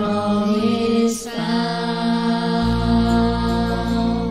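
Seventh-grade chorus singing slow, long-held notes over a steady low accompaniment, the chord changing about a second in and again midway.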